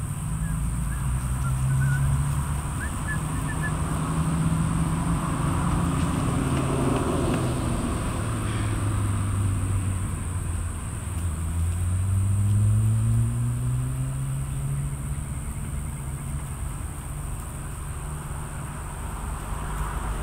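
A motor vehicle's engine running as a low hum, its pitch sinking and then climbing again, as when a vehicle slows and speeds up. A steady high insect drone and a few faint bird chirps sit in the background.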